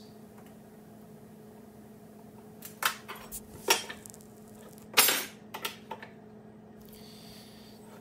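A handful of light clicks and clinks from small hand tools handled and set down on a wooden workbench, clustered in the middle, the loudest about five seconds in. A faint steady hum runs underneath.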